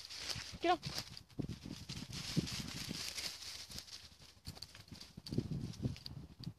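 Footsteps crunching and rustling through woodland undergrowth of brambles, dead bracken and leaf litter, in an uneven walking rhythm, with spaniels pushing through the vegetation.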